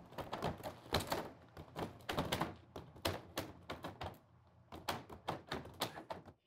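Rapid, irregular light clicks and taps, about five a second, with a short pause about four seconds in.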